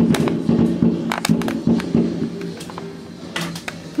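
Background music with steady held notes, overlaid by fireworks outside going off in sharp bangs and crackles: a burst at the start, more about a second in, and a cluster near the end.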